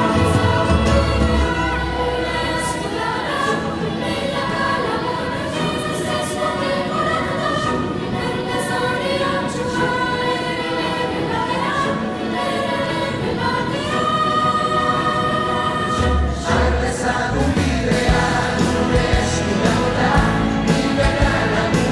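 Music with choral singing: a choir of voices holding long notes over instrumental accompaniment, with a deep bass swell near the start and again about three quarters of the way through.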